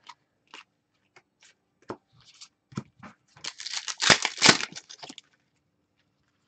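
Hands flipping through a stack of trading cards: scattered soft clicks and slides of card on card, with a denser run of sliding and rustling from about three and a half to five seconds in.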